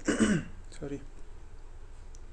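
A man clearing his throat: one loud rasp at the start, then a shorter, weaker one just before a second in.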